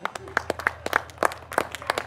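Sparse applause: a small audience clapping unevenly right after a live punk song ends, over a low steady hum from the stage amplifiers.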